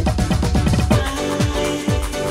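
Early-1990s house and techno DJ megamix played from a 12-inch vinyl record. For about the first second the kick drum hits in a quick roll. It then settles into a steady beat of about two kicks a second under a held synth chord.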